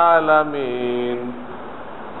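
A man's voice chanting a drawn-out line of a refrain, holding the last syllable as its pitch slowly sinks, then fading out about one and a half seconds in.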